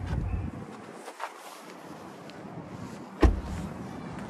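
A pickup truck's front passenger door shut with a single solid thud about three seconds in, after a couple of faint clicks, over faint outdoor background noise.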